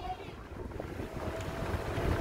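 Wind buffeting the microphone as a low, uneven rumble, recorded from a slowly moving car.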